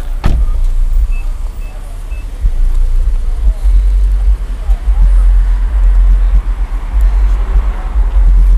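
A 2010 Nissan Maxima running while stationary, with a heavy, uneven low rumble throughout and one sharp knock just after the start.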